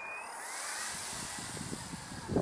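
Electric motor and propeller whine of an RC model airplane passing close by, its pitch dropping as it goes past, followed by a rising rush of air noise.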